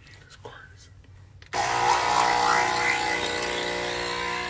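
An electric blender switched on suddenly about a second and a half in, its motor running steadily and loudly. A few faint handling clicks come before it.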